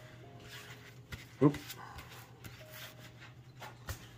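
Quiet room with a steady low hum and a few light clicks and taps from hands handling things on a tabletop, broken by a short spoken "oop".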